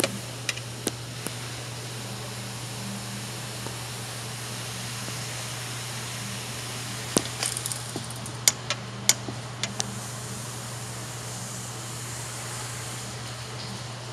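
Steady low background hum with scattered sharp clicks and taps of a hand tool and fingers against the metal and plastic parts of a door handle mechanism, most of them bunched about seven to ten seconds in.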